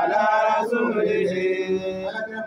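A man's voice reciting the Quran in a melodic chant, drawing out long notes that slide from pitch to pitch.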